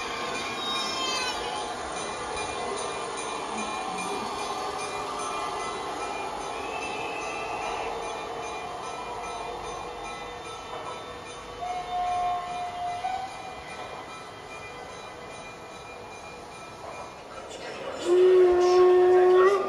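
LGB garden-scale model trains running on a layout, with steady running noise throughout. A short, steady whistle tone from a locomotive sound decoder comes about twelve seconds in.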